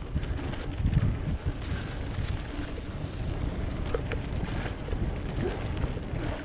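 Wind buffeting the on-board camera's microphone, with the irregular rattle and knocks of a bike riding fast over a bumpy dirt trail.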